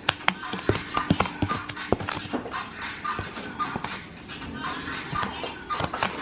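Metal spoon scooping dry fish-fry breading onto salmon fillets in a clear container, with irregular clicks and taps of the spoon against the dish and a gritty scraping through the coating.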